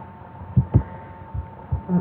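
About five soft, low, dull thumps, irregularly spaced, as of knocks on a desk picked up by a desk microphone, over a faint steady electrical whine.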